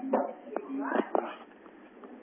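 Short, wordless human voice sounds, in a few brief pitched bursts during the first second and a half, over a low hiss.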